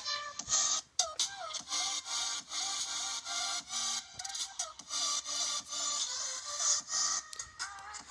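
Music from a video intro playing through an iPhone's speaker, with wavering tones above a repeating pattern of short low notes.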